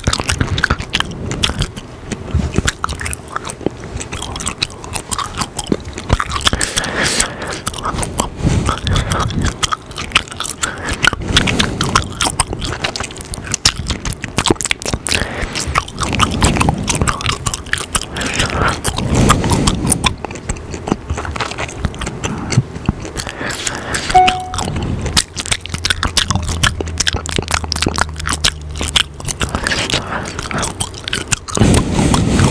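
Close-miked gum chewing and mouth sounds: a continuous, irregular run of wet clicks and smacks right at the microphone.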